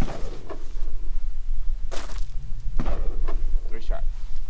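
Wind rumbling on the microphone, broken by two sharp cracks about two and three seconds in, the second ringing briefly.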